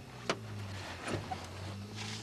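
Car engine running with a steady low hum, heard from inside the cabin, with one sharp click about a third of a second in.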